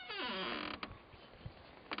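A classic Mini's door creaking open, one creak falling in pitch, followed by a couple of sharp clicks from the latch and door.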